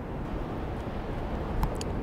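Steady outdoor background noise with a low rumble, with a few faint clicks near the end.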